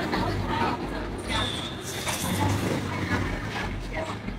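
Indistinct background voices and chatter over a steady hum of room noise, with no clear words.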